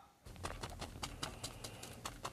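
A paintbrush tapping against a canvas: a quick, slightly irregular run of light taps, about six a second.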